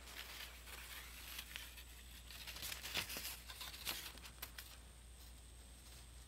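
Faint handling sounds of paper cutouts being moved by hand on carpet: light rustling with scattered small clicks, over a low steady hum.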